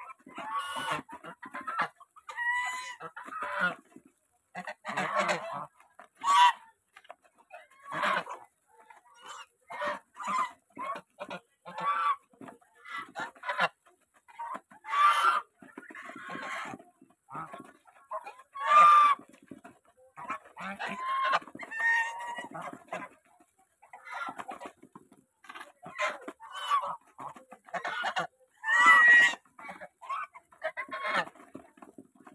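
A flock of domestic geese calling while they feed, with short calls and honks coming irregularly and overlapping. The loudest honks come near the middle and again just before the end.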